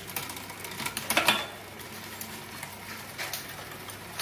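Shimano 105 11-speed road-bike drivetrain turned by hand: the chain runs over the chainrings and cassette with light ticking and clicking, and a louder rattle about a second in.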